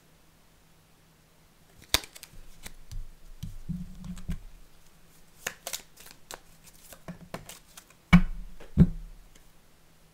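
Tarot cards being handled: a card laid down on a cloth-covered table and cards slid and shuffled from a small deck, with light clicks and rustles. Near the end come two louder knocks, under a second apart.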